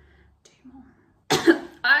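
A woman coughs once, sharply and loudly, about a second and a half in, after a quiet start: a reaction to the sour raw lemon burning her throat.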